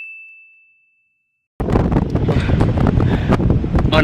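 A single clear, high ding that fades out over about a second and a half, cut in with silence around it. About a second and a half in, loud wind buffeting the microphone and vehicle noise come in as the pickup drives along.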